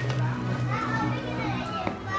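Children's voices calling out and chattering over background music and a steady low hum, with a brief click near the end.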